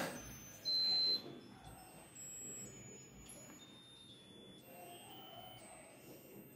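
A short knock, then a single high-pitched electronic beep lasting about half a second, starting just over half a second in. Faint room sound fills the rest.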